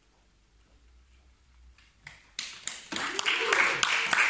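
Small audience clapping that breaks out about two seconds in, after a near-silent pause as the song's last notes die away, and quickly grows louder.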